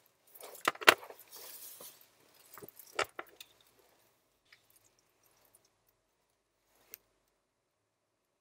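Several sharp clicks and a short, high jingling rattle in the first three seconds, like small metal objects being handled, then near silence with one faint tick near the end.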